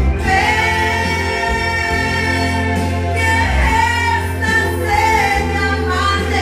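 A woman singing karaoke into a microphone over a backing track, holding long, wavering notes.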